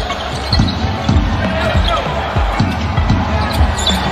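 Basketball dribbled on a hardwood court: a string of uneven bounces, about two a second, over arena background noise.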